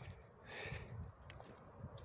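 Faint sounds of someone walking up a dirt path: soft, irregular footsteps, with a short breath about half a second in.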